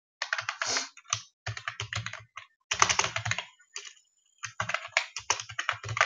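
Typing on a computer keyboard: quick runs of keystrokes, with a pause of about a second a little past the middle.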